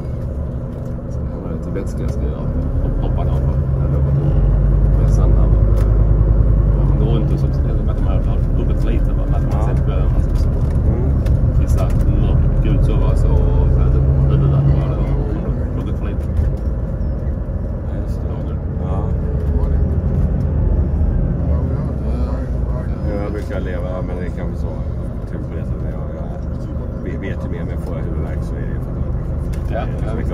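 Rail-replacement bus engine and road noise heard from inside the passenger cabin, the engine working harder and louder from a few seconds in until about halfway, then easing off.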